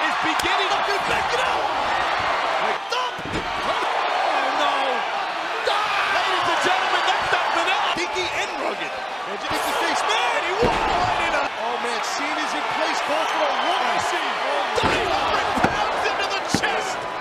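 Wrestling arena crowd shouting and yelling throughout, broken by a few heavy thuds of bodies hitting the ring mat.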